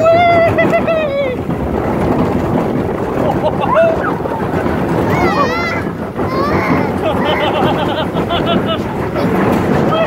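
Riders yelling and shrieking without words on Gadget's Go Coaster, a small children's roller coaster, over the steady noise of the moving coaster car.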